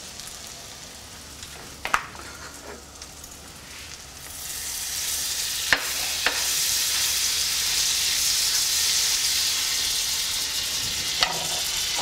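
Egg-dipped French toast slices frying in butter in a nonstick pan, a steady sizzle that grows louder about four seconds in as a spatula pushes the pieces around. A few light clicks of the spatula against the pan.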